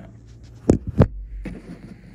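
Two sharp thumps about a third of a second apart, handling noise as a cardboard shipping tube is opened.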